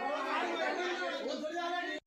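Several people's voices talking over one another in an indistinct chatter.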